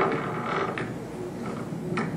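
A knock, then rustling and creaking handling noise from a handheld microphone as it is passed from one person to another.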